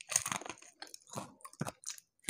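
A person biting and chewing crispy deep-fried catfish: irregular crunchy crackles, a dense run in the first half-second, then scattered snaps.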